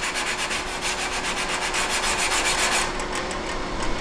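A guitar fretboard being sanded level with a fretboard leveling tool, in quick, even back-and-forth strokes, about five or six a second, that stop about three seconds in. A faint steady hum sits underneath.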